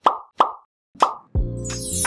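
Three short popping sound effects, a fraction of a second apart, then outro music starting about a second and a half in with a steady bass line.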